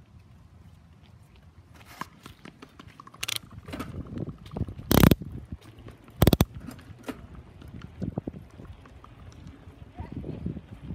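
Running footsteps on an asphalt road, a quick uneven patter of short knocks that starts about two seconds in. Two much louder knocks come about five and six seconds in.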